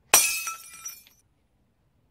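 A sudden crash of shattering glass, sharp at first and dying away within about a second, with ringing notes held through the decay.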